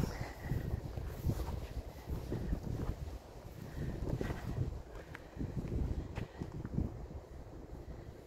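Wind rumbling on a phone microphone, with irregular soft thumps of footsteps as the person filming walks.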